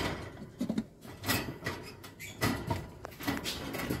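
A scatter of light clicks, scrapes and rustles from a wooden lovebird nest box on a wire cage being handled.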